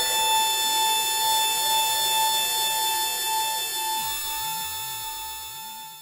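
Novation Peak synthesizer holding one long, bright tone, with faint wavering pitch glides underneath, fading out over the last couple of seconds as the piece ends.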